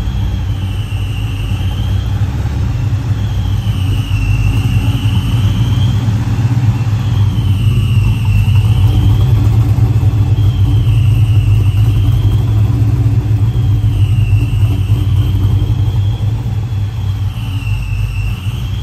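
Supercharged LS-swapped Chevelle's V8 idling with a deep, steady exhaust rumble that swells slightly partway through. A high thin whine rides over it, wavering slowly up and down.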